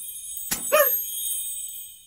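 High, bell-like ringing tones, held and fading out toward the end, with a short click and a brief voice-like note a little over half a second in.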